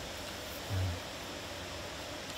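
Steady, soft outdoor background hiss with no clear events, and a brief low hum a little under a second in.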